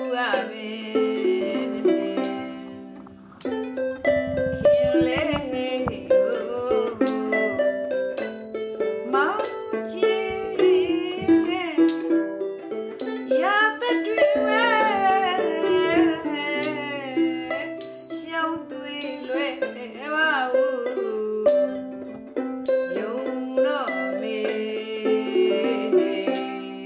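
A Burmese classical song: a woman singing with wavering vibrato over plucked-string accompaniment, with a small bell-like ting struck about every second and a half to two seconds to keep the beat.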